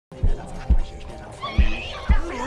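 Cartoon soundtrack: music with three heavy low thumps, and a high, wavering cry near the end.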